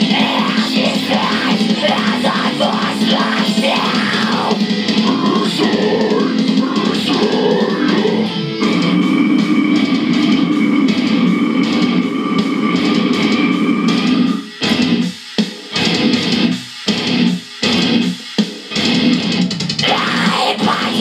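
Heavy metal backing track with distorted electric guitar and drums playing loud and dense. About two-thirds of the way in it turns to a stop-start section: short heavy hits broken by sudden brief gaps.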